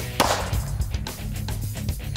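A single pistol shot with a subsonic 60-grain .22 LR round, one short sharp crack just after the start with a brief trailing echo, over background music.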